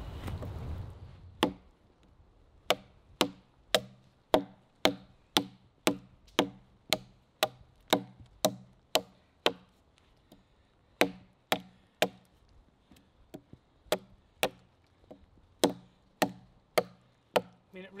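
A heavily modified MOD survival knife chopping into a seasoned, dead-standing log that is getting hard. There are sharp wooden strikes at about two a second, with a brief pause about halfway through.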